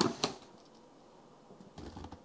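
Cardboard packaging being handled: two quick sharp knocks at the start, then quiet rustling with a few faint taps near the end.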